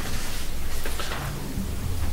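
Sheets of paper rustling and being turned close to a desk microphone, over a steady low rumble.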